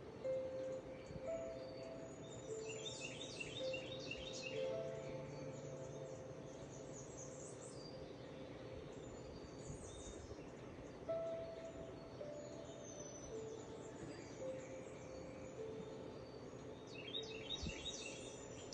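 Faint, soft background music of slow held notes, with bursts of high bird chirping about three seconds in and again near the end.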